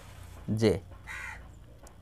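A man's voice saying the single letter "J", followed about a second in by a short, harsh call.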